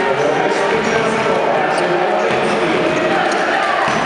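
Basketball bouncing on a wooden court during a game, over a steady din of voices in a large sports hall.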